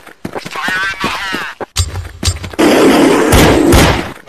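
A voice, then a loud, harsh burst of noise with a heavy low rumble that sets in a little before two seconds and grows louder over the last second and a half.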